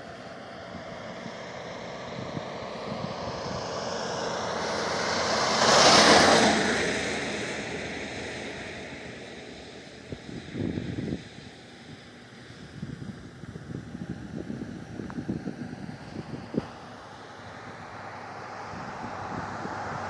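A vehicle passing by on the road, its noise building to its loudest about six seconds in and then slowly fading away. Scattered soft knocks follow in the second half.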